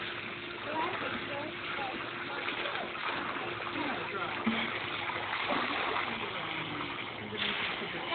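Pool water splashing and lapping as a toddler kicks and paddles a short way across the pool.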